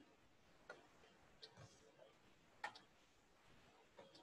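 Near-silent room tone with a few sharp clicks from a computer pointing device working the screen's pen tools; the loudest comes about two and a half seconds in.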